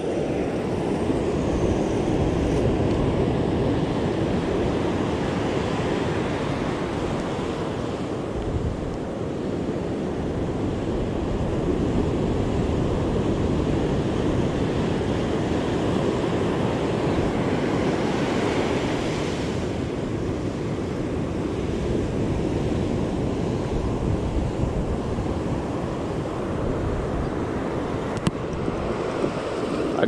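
Ocean surf breaking and washing up a sandy beach: a continuous rushing that swells and eases as the waves come in, with one brighter surge about two-thirds of the way through. Wind buffets the microphone throughout.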